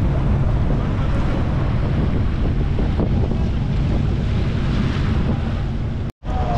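Wind buffeting the microphone on a moving jet ski, over a steady low hum from the watercraft's engine and the wash of the water.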